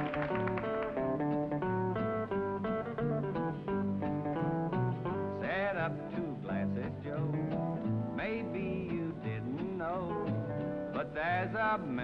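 Country band instrumental break: an electric lead guitar plays a solo of quick picked notes over the band's rhythm guitar and bass. Partway through, some notes slide and waver in pitch.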